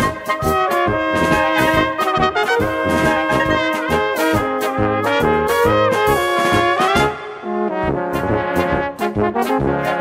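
Brass band playing an instrumental polka: trumpets and trombones carrying the tune over tuba bass and a steady polka beat. About seven seconds in the bass and beat drop out briefly after a rising run, then the band comes back in.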